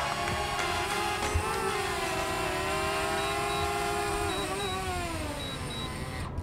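DJI Mavic Mini quadcopter's motors and propellers whining in a hover, the pitch wandering slowly with motor speed and dropping near the end as the drone comes down to be caught by hand.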